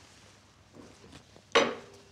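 A single sharp knock about one and a half seconds in, with a short ringing tail: something hard set down on a table or a dish. Fainter small handling sounds come just before it.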